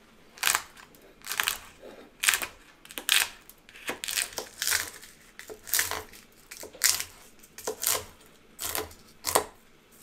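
Chef's knife chopping crunchy dried hot peppers on a wooden cutting board: a string of short, crackling crunches, roughly one to two a second and unevenly spaced.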